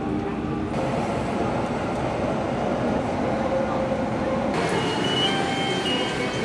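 Steady running rumble of a train in motion, heard from inside the carriage, with a few thin high tones near the end.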